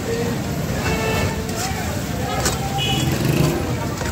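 A metal ladle and tongs clinking and scraping against a steel karahi wok as mutton karahi is stirred, over a steady noise bed with people talking around.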